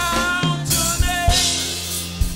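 Live gospel worship music: a drum kit with bass drum and snare keeping a steady beat over bass and keyboard, with a man singing.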